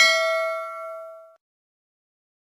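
A single bell 'ding' sound effect that rings out and fades away over about a second and a half.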